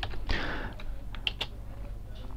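A few scattered computer keyboard keystrokes: short, sharp clicks as a name is typed into a text field.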